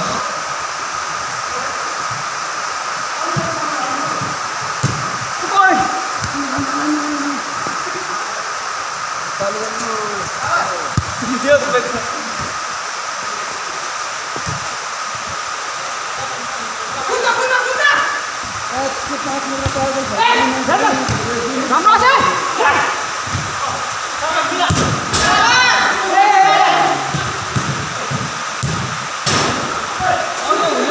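Players shouting and calling to each other during a futsal game over a steady background hiss, the shouts getting busier in the second half. A few sharp knocks stand out from the noise.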